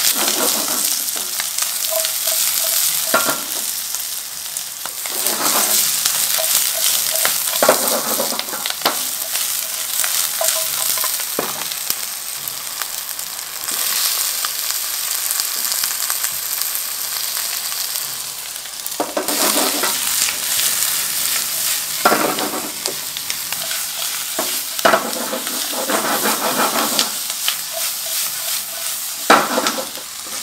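Onion, leek, carrot and beef cubes sizzling in a hot wok, with repeated spells of scraping and rustling as the food is stirred and tossed in the pan.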